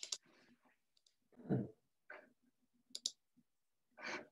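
Faint computer mouse clicks, two sharp ones close together about three seconds in, with a short low thump about a second and a half in.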